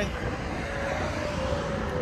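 Steady outdoor background noise: a low rumble with a faint steady hum and no distinct events.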